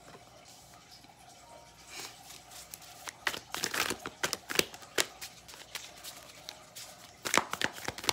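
Tarot cards being handled and shuffled: quiet for about two seconds, then a run of irregular clicks and paper rustles as the cards are slid and shuffled.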